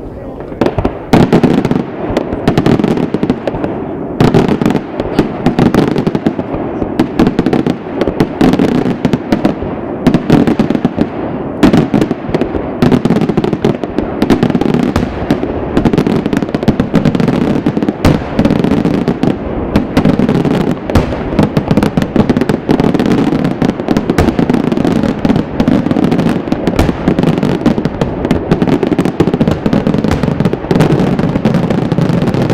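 Daytime fireworks barrage: a dense, continuous run of loud bangs and crackling reports, many per second. It jumps louder about a second in and keeps up without a break.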